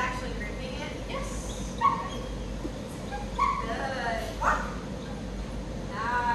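A dog giving short, high-pitched cries, about four of them a second or so apart, over steady room noise.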